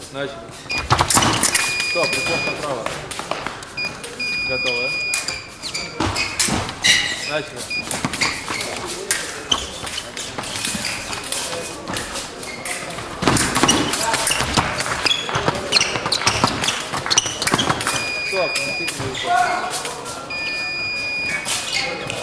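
A foil fencing bout on a metal piste: a rapid run of sharp clicks and knocks from blades meeting and feet stamping, with short electronic beeps from the fencing scoring machine several times, the last near the end as a touch is registered. Voices call out in a large echoing hall.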